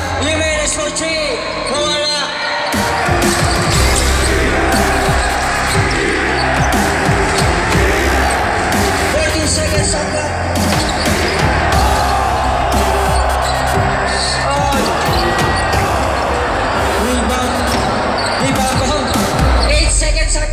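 A basketball bouncing on an indoor court during a game, over a hubbub of voices in a large hall. Music with a steady low bass comes in about two and a half seconds in.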